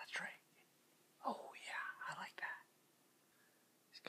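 A man whispering: a short phrase, then a longer one about a second later.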